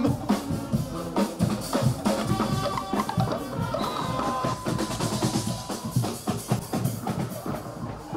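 A guggenmusik carnival band playing, with busy drumming on bass drum and snare and a few held notes over it.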